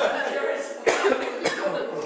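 A man laughing heartily, breaking into two sharp coughs, one about a second in and one about half a second later, before the laughter fades out.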